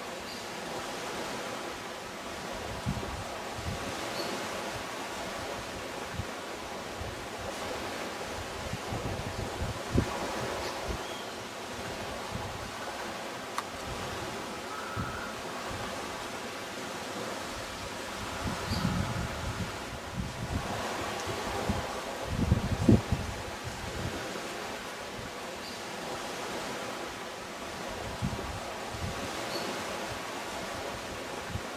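Steady outdoor wind noise with leaves rustling, and low gusts buffeting the microphone now and then, strongest about two-thirds of the way through. A single sharp knock about a third of the way in.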